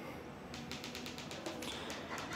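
Faint light tapping and clicking: many small ticks in quick succession.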